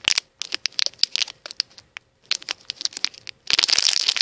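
Plastic Gobstoppers candy packet squeezed and pinched close to the microphone: irregular sharp crinkles and crackles that thicken into a dense, loud burst near the end.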